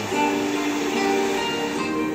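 Music with plucked-string notes playing from the built-in speakers of a TCL 32S65A television.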